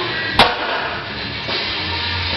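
Rock music playing throughout, with a single sharp clank about half a second in as a loaded barbell is set down on the floor.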